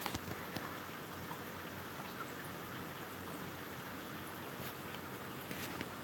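Faint, steady water noise with scattered light ticks: aquarium filtration bubbling and trickling in the fish room.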